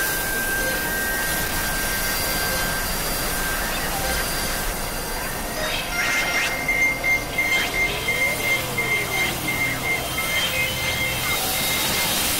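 Experimental synthesizer noise: a dense, hissy electronic drone with a steady high tone over the first few seconds. About halfway in, a pulsing high tone and a low hum come in, and a tone glides up and back down.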